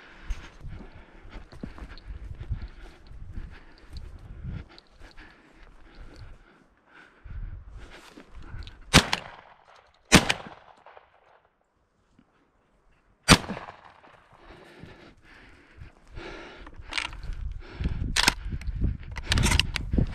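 A shotgun fired three times, the first two shots about a second apart and the third about three seconds later. Footsteps and rustling through dry scrub come before and after the shots.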